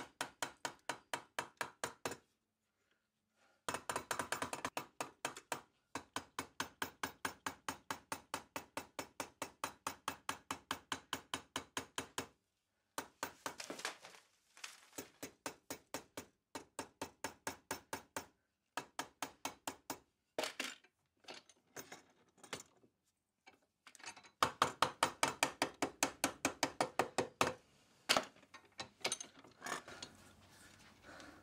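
Mallet blows on a copper boiler plate clamped over a former in a vice, flanging its outer edge. The blows come fast and even, about five a second, in runs of several seconds broken by short pauses.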